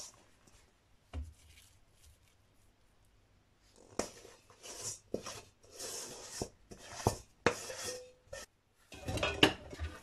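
A metal mixing bowl clattering against utensils: after a quiet start with one low knock, a run of short scrapes and sharp clinks follows from about four seconds in as sticky sugar filling is worked out of the bowl.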